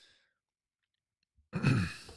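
A man sighing: a faint breath out at the start, then a louder, low-pitched voiced exhale about one and a half seconds in that falls away.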